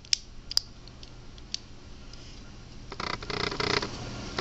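Plastic Bakugan toy being folded shut by hand: two sharp clicks within the first second as its hinged panels snap into place, a fainter click about a second and a half in, then about a second of quick scraping clicks near the end.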